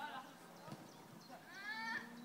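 Distant shouting from youth footballers during play, ending in one long, high call. The call starts about one and a half seconds in and rises in pitch before it holds.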